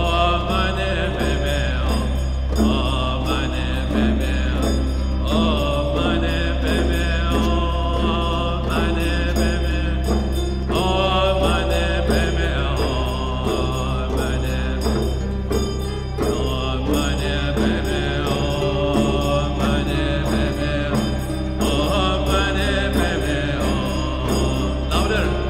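Mantra-like chanting over a steady low drone, with repeated plucked notes that run on without a break.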